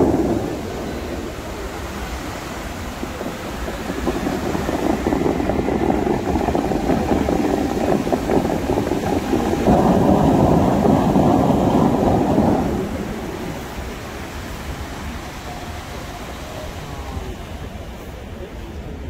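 Bellagio fountain jets spraying high and water crashing back into the lake: a rushing noise that grows about four seconds in, is loudest from about ten to thirteen seconds, then fades as the jets drop. It opens with a sharp bang.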